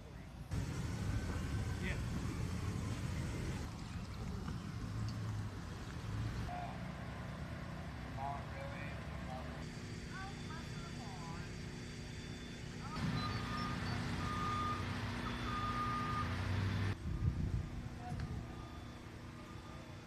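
Outdoor street sound in several short segments that cut in and out abruptly. Vehicle engines run with a low rumble, and later a short tone repeats about once a second, like a reversing alarm. Faint voices and chirps sit in the background.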